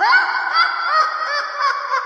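A loud, dense clamour of many overlapping short honking calls that cuts in suddenly after a moment of silence and keeps going.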